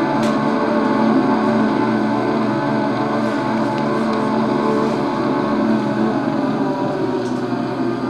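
A record playing on a portable suitcase record player: music that is a dense, steady drone of held low tones, with a few faint clicks from the disc surface.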